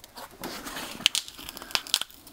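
Foam padding being pulled and peeled off the top of a lithium battery pack's cells: an irregular scratchy tearing noise broken by several sharp snaps, the loudest about a second in and near the end.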